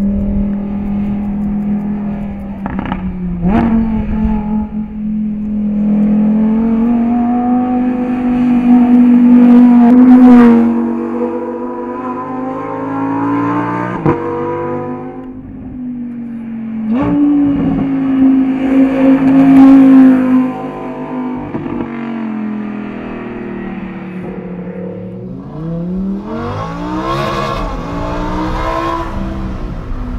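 Lamborghini Huracán Performante's naturally aspirated V10 pulling hard through the gears: the engine note climbs, breaks sharply at each shift, and is loudest twice. Near the end the note sweeps up and arcs back down.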